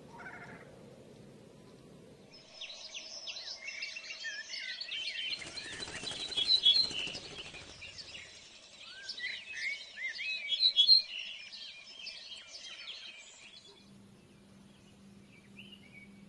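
Several small songbirds chirping and singing in a busy overlapping chorus of short, quick high notes. The chorus starts a couple of seconds in and stops shortly before the end, with a rush of noise under it in the middle.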